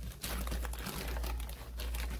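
Clear plastic wrapping crinkling and rustling in irregular crackles as it is handled and pulled around a packed sewing machine, with a steady low hum underneath.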